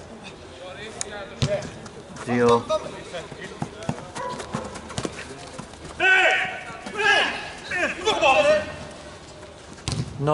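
Small-sided football being played on artificial turf: a ball kicked now and then, heard as sharp knocks, with men shouting around two and a half seconds in and again from about six to eight and a half seconds in.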